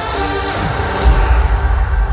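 Happy hardcore dance music played loud over a festival sound system, a heavy kick drum pounding beneath the synths.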